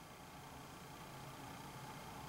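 Quiet room tone: a faint steady hiss with no distinct sound.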